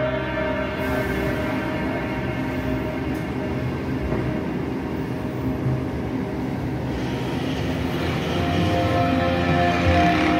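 Ambient background music with sustained dark droning tones over a low rumbling texture.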